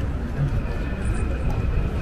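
Outdoor crowd ambience: indistinct voices of passers-by over a steady low rumble.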